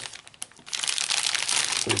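Plastic film wrapper of a trading-card starter pack crinkling as hands pull the seal open: a few sharp crackles at first, then steady crinkling from just under a second in.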